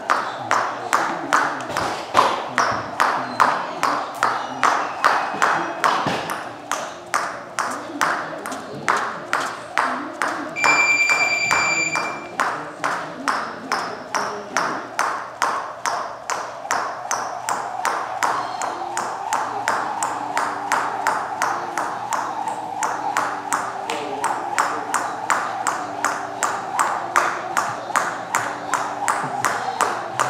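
Jump rope slapping the gym floor mats in a quick, even rhythm, about three strikes a second. A short electronic beep sounds once, about eleven seconds in.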